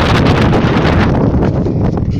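Wind buffeting the microphone: a loud, steady rumble with no other clear sound above it.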